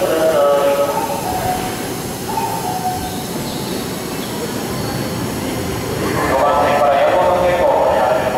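A Keikyu commuter train standing at the platform with its doors open, its equipment humming steadily. A voice comes over it at the start and again, louder, from about six seconds in, like a station public-address announcement.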